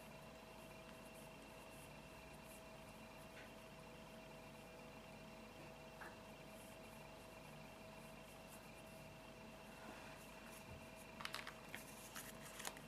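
Near silence: room tone with a faint steady hum, and a few soft clicks near the end.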